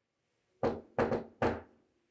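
Knuckles knocking on an apartment door: four knocks, the second and third in quick succession.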